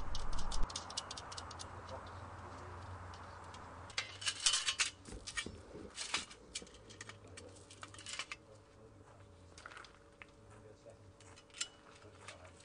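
Light clicks and taps of aluminium staging sections and bolts being handled and fitted together, with a quick cluster of clicks about four to five seconds in and scattered single clicks after.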